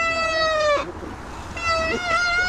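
Mountain bike rear freehub buzzing while coasting, a high steady whine. It falls slightly in pitch and stops under a second in, then returns at the same pitch about a second and a half in. The buzz is typical of a high-engagement Industry Nine hub.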